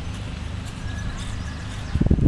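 Hoofbeats of a horse cantering on grass turf, faint under a steady low rumble.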